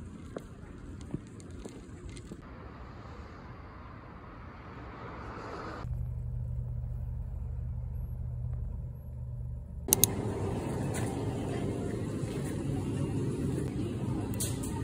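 Low, steady background rumble of the kind that vehicles or traffic make, heard in several short stretches that change abruptly. One stretch in the middle holds a steady low hum, and two sharp clicks come just before the last change.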